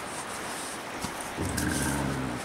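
Dog giving a low play growl while wrestling with another dog, starting about one and a half seconds in, with a brief click a little before it.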